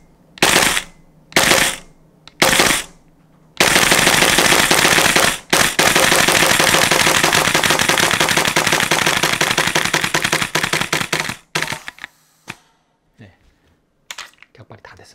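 Tokyo Marui MTR-16 G Edition gas blowback airsoft rifle firing: three single shots about a second apart, then a long rapid-fire burst of about eight seconds with one brief break. The bolt's cycling turns sparser and weaker near the end.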